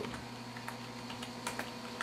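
A few scattered keystrokes on a computer keyboard, over a steady background hum.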